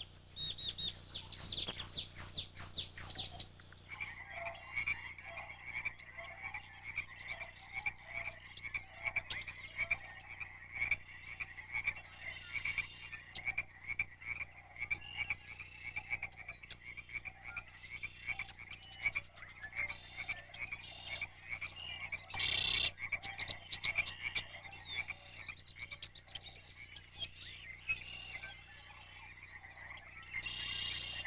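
Small songbirds chirping for the first few seconds, then a steady chorus of frogs calling in a fast, pulsing trill. A short loud burst stands out a little past the middle.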